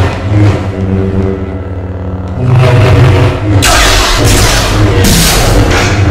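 Film soundtrack of a lightsaber duel: humming lightsaber blades swinging and clashing, with loud sweeping swells about two and a half seconds in and again near five seconds, over orchestral music.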